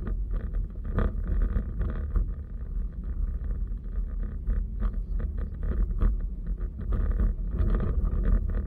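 Steady low rumble of a car driving along a road, with road noise and wind buffeting on the microphone.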